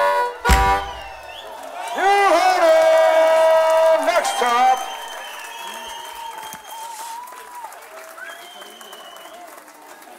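A live blues-rock band finishes a song on one loud final hit. A voice then calls out for a couple of seconds, and the crowd cheers with a few whistles as the sound dies down.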